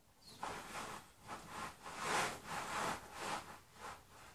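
A run of soft scuffs and rubbing from bare feet shifting on a rubber balance disc as a person steps onto it and finds his balance.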